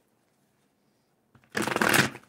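A tarot card deck riffle-shuffled by hand on a table, a dense rapid flutter of cards starting about one and a half seconds in after a near-silent start.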